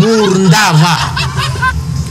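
A man's voice speaking, opening with a loud exclamation that rises in pitch.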